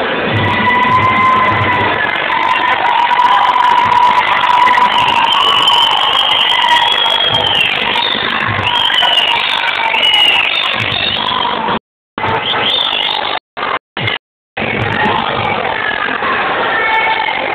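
Muay Thai ring music: a wailing Thai oboe melody that slides in pitch, over drum beats, with crowd noise underneath. The sound drops out completely in a few short gaps about twelve to fourteen seconds in.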